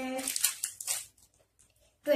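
Plastic biscuit wrapper of an Oreo packet crinkling as it is picked up and handled, for under a second near the start.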